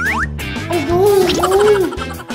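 Children's background music, with a quick rising whistle-like glide at the start and a wobbling, warbling tone laid over it for about a second and a half.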